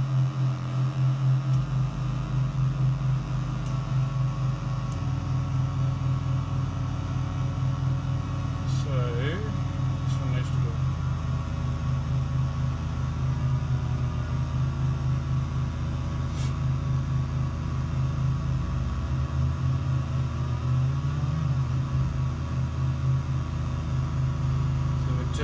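Homemade drone synth built from two 40106 Schmitt-trigger inverter chips, several square-wave oscillators summed into one low, sustained drone that beats and wavers. Further oscillators are switched in about a second and a half in and again about five seconds in. The lowest tones shift between about 19 and 22 seconds as the controls are changed.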